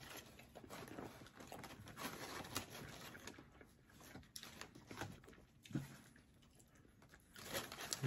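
Faint tearing and rustling as a bread-crusted pizzoli is pulled apart by hand in its paper wrapper, with a few sharper crackles.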